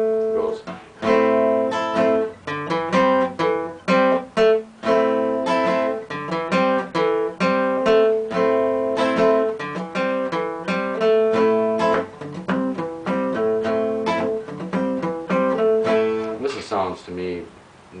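Steel-string acoustic guitar playing an A minor blues riff: a barred A minor chord at the 5th fret with a bass line walking up the 5th string, picked in a steady repeating rhythm. The playing stops near the end.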